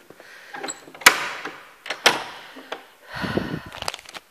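Wooden door with an iron ring handle being worked: two sharp clacks about a second apart, each echoing, then a low bump near the end.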